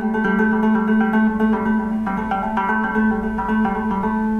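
Gretsch hollow-body electric guitar playing a trill on the D string, frets 5 and 7 (G and A), alternating rapidly and evenly. The notes are kept going by hammer-ons and pull-offs alone, with no fresh pick strokes.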